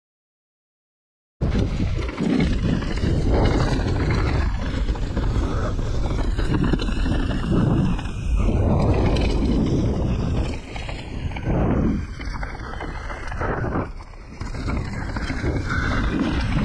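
Mountain bike riding down a dirt singletrack: loud, steady rush of tyres on dirt, frame rattle and wind on the camera microphone, starting after about a second and a half of silence and easing off briefly twice near the end.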